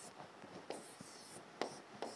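Pen drawing boxes on an interactive display screen: faint scratchy strokes with two sharp taps, at under a second and about a second and a half in.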